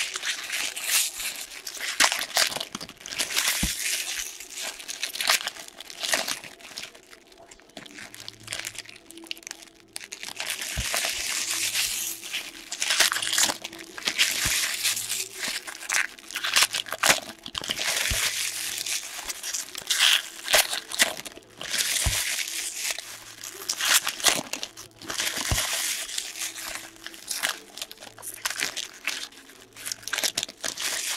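Foil trading-card pack wrappers crinkling and tearing as hockey card packs are opened and crumpled by hand, in irregular bursts with a short lull partway through. A few sharp clicks are scattered through.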